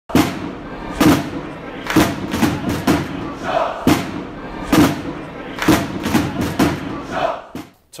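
Intro sting of heavy drum hits roughly once a second, some in quick pairs, over a football crowd chanting and cheering. It stops just before the end.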